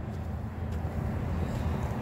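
A steady low engine rumble with no distinct events.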